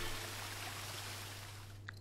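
Faint, even hiss of water spraying from indoor fire sprinklers, slowly fading, over a low steady hum.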